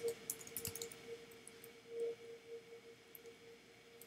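Computer keyboard keys clicking in quick succession through the first second, as an id attribute is typed into HTML code, then a faint steady hum.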